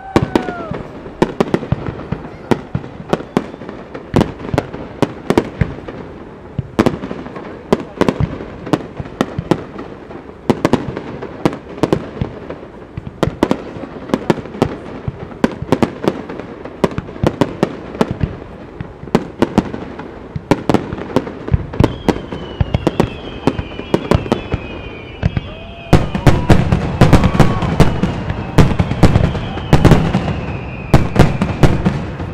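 Japanese aerial firework shells bursting in a rapid, continuous series of bangs and cracks. From about 22 s in, high whistling tones slowly fall in pitch over the bursts, and from about 26 s in the barrage grows louder and denser with a heavier rumble.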